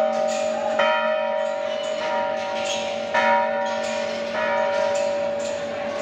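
Large metal temple bell struck by hand three times at uneven intervals, each strike ringing on as a sustained, shimmering metallic tone before the next.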